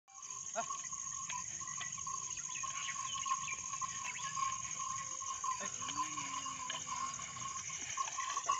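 Steady, high-pitched chirring of field insects, finely pulsing, with a second steady lower tone and faint scattered clicks; a faint low drawn-out call comes in about six seconds in.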